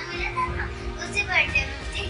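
A child's voice in short bursts over steady background music.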